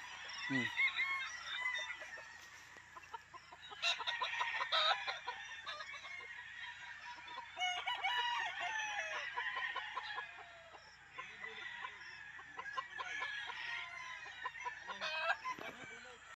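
Many gamefowl roosters crowing, their calls overlapping one after another in a continuous chorus, with a few sharp clicks about four and five seconds in.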